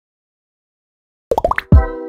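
A logo intro sting. About a second in comes a quick run of four or five plops, each rising in pitch, then a low bass hit with a held chord that slowly fades.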